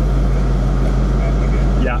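Steady low drone of a car's engine idling, heard from inside the cabin. Faint bits of voice lie over it, with a short spoken word near the end.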